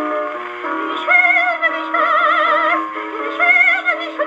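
A 1917 Victor Victrola acoustic phonograph playing a shellac record of a 1930s German song. A high voice holds long notes with wide vibrato over sustained accompaniment, and the sound has no bass and little top.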